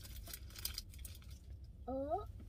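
Faint crinkling and rustling during the first second as a bagel is torn and handed over, over a steady low hum inside a car cabin; a voice begins near the end.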